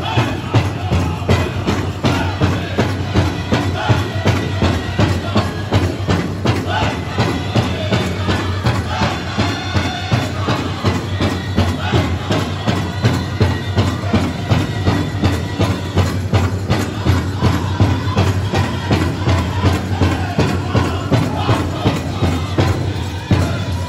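Powwow drum group singing over a big drum struck in unison with a steady beat, about two beats a second, playing a contest song for men's traditional dancing.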